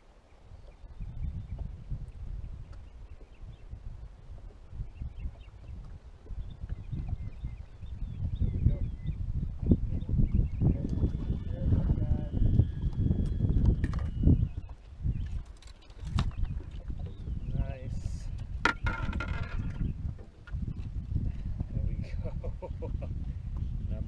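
Wind buffeting the microphone in a steady low rumble that strengthens about a third of the way in, with scattered clicks and knocks from rod and boat handling.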